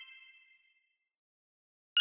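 The ringing tail of a bright, bell-like chime sound effect dies away within the first half second, followed by dead silence; a second, louder chime strikes right at the end.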